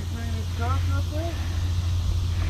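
A faint voice in the first second over a steady low rumble.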